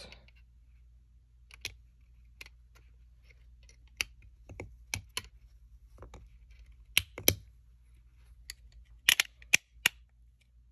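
Parts of a truck door light (housing, reflector and lens) clicking and tapping against each other as they are worked together by hand: a dozen or so sharp, irregular clicks, the loudest a pair about seven seconds in and a quick cluster near the end.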